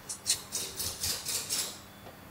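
Plastic protective film rustling and crinkling in a quick run of about six short, high, crackly bursts as gloved hands work on the wrapped front cowl of a motorcycle.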